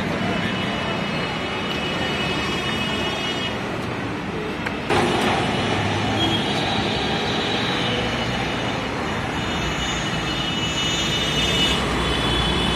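Busy city road traffic: a steady mix of car, bus and auto-rickshaw engines and tyre noise. The sound steps up suddenly in level about five seconds in, with a bus close by.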